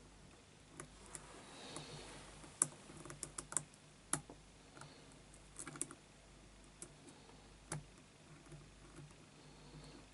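Lock pick working the pins of a six-pin Yale euro-profile cylinder under tension: faint, irregular small metallic clicks, with a quick run of several about three seconds in.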